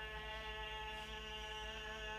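A steady hum of several held tones, with a low pulsing buzz beneath it, unchanging throughout.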